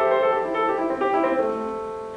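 Solo acoustic piano playing a short phrase of chords and single notes, a new one about every half second, then letting the last one ring and fade near the end.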